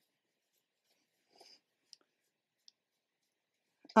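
Near silence with a few faint, brief rustles and soft clicks of fingers working through short synthetic wig hair.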